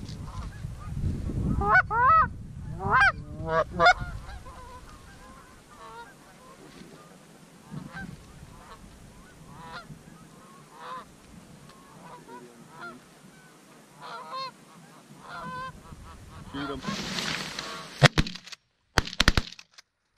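Goose honking: loud, close honks about two to four seconds in, then fainter, scattered honks. Near the end, several shotgun blasts in quick succession.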